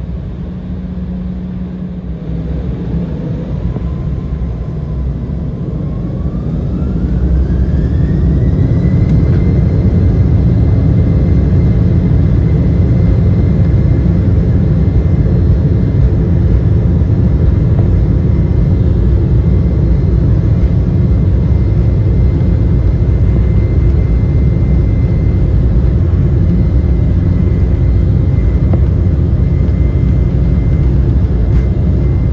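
Embraer E190's GE CF34 turbofan engines spooling up to takeoff thrust, heard from inside the cabin: a fan whine climbs in pitch for about five seconds, then holds steady over a loud, deep rumble as the jet accelerates down the runway.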